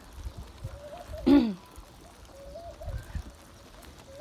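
A flock of Muscovy ducks feeding on scattered grain, with low scuffling and pecking. One short loud call, falling in pitch, comes about a second in.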